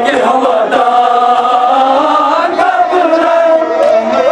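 A group of men chanting a Kashmiri noha, a Muharram lament, together through handheld microphones, holding long drawn-out notes that slide between phrases.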